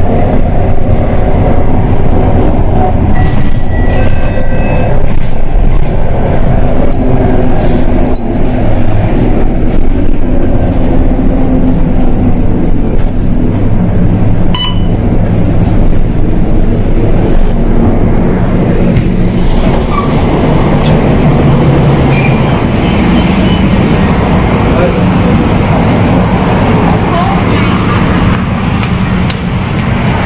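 Inside a city bus: the engine and road noise run steadily, with indistinct voices mixed in.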